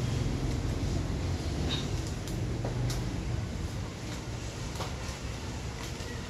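Steady low background hum, with a few light clicks and rustles of a paper slip being handled.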